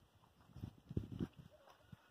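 Faint, soft low thumps, a small cluster of them from about half a second to just past a second in.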